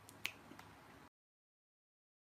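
Near silence: faint room hiss with one short, sharp click about a quarter second in, then the audio cuts out to dead silence about a second in.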